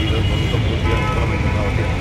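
A man speaking Telugu into press microphones outdoors, over a steady low rumble on the microphone.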